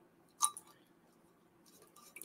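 A single light click about half a second in, as a spray atomizer is fitted onto the neck of a glass cologne bottle.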